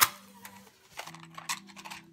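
A match struck once, a sharp scrape flaring into a short hiss, followed by a few fainter clicks about every half second.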